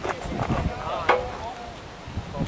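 Indistinct voices of people talking off-mic, over a low rumble, with one sharp click or knock about a second in.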